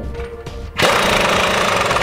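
Impact wrench on a long socket extension running a nut down on a hitch frame-bracket bolt. It starts suddenly about a second in with a loud, rapid hammering that keeps going.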